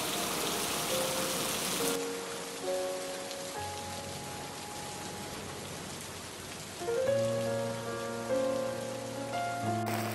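Steady rain falling, an even hiss throughout. Soft background music with held notes comes in about two seconds in and grows fuller from about seven seconds.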